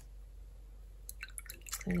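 Watercolour brush swished in a jar of rinse water: a quick run of small splashes and clicks from about a second in.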